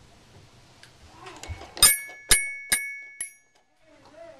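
Toy xylophone's metal bars struck four times at uneven intervals about half a second apart, each note ringing briefly like a small bell.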